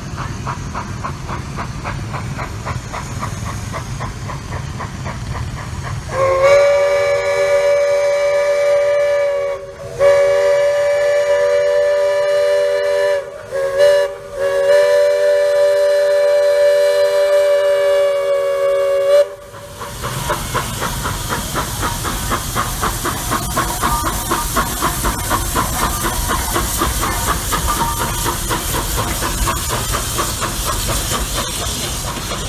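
Steam locomotive of the Walt Disney World Railroad blowing its whistle, a chord of several steady tones, in long, long, short, long blasts, the grade-crossing signal pattern, from about six seconds in to about a third of the way from the end. Before and after the whistle the engine's steam hisses and chuffs in a steady rhythm as it runs.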